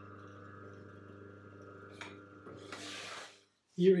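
Electric juicer motor running with a faint, steady hum for about three seconds, then a brief rushing noise before it stops.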